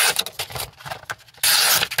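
A razor-sharp folding knife slicing through a sheet of paper: two quick cuts, one right at the start and one about one and a half seconds in, with faint paper crackle between. The clean slice is the sign of a razor-sharp edge.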